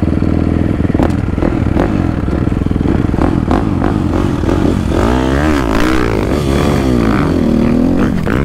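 Dirt bike engine running under throttle as it is ridden on a motocross track, its pitch rising and falling several times in the second half. A few sharp clicks of clatter come through in the first few seconds.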